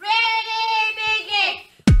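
A high-pitched voice sings one long held phrase as part of a music track. Near the end, a dance beat with heavy kick drums comes in.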